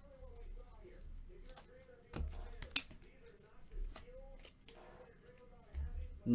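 Baseball trading cards being flipped through and handled by hand: soft rustles and clicks of card stock, with a knock about two seconds in and a sharp snap just after.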